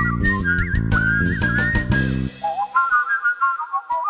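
Whistled melody over an instrumental backing with bass and drums. A bit over halfway through, the low backing drops out, leaving the whistling over lighter high notes.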